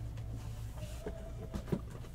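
Faint handling noises: a few soft taps and scrapes as a shrink-wrapped cardboard box of trading cards is slid out from a stack and a knife is picked up, over a steady low electrical hum.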